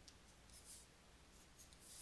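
Near silence, with faint scratching of a stylus drawing lines on a tablet, heard about half a second in and again near the end.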